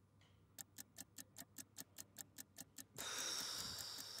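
A ticking countdown-clock sound effect, about five quick, even ticks a second. About three seconds in it gives way to a louder, steady hiss with a faint high tone.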